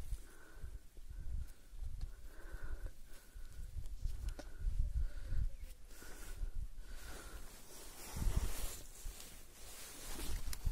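Walking along a stone-paved mountain trail: footsteps and wind buffeting the microphone give an uneven low rumble, loudest about eight seconds in. Over it, a short high note repeats about nine times, roughly every two-thirds of a second, and stops about seven seconds in.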